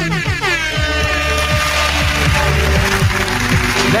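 Radio-show intro music with a sound effect: a loud pitched blare that slides down in pitch over a rush of noise during the first second and a half, over a steady low drone.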